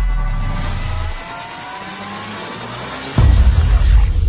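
Logo-reveal music sting: a low bass rumble fades, several rising synth tones build for about two and a half seconds, then a sudden deep bass hit lands about three seconds in as the logo appears.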